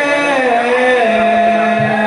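A male voice singing a long, wavering held line into a microphone in the style of dikir barat vocals. Near the end, low beats start in a quick, even rhythm.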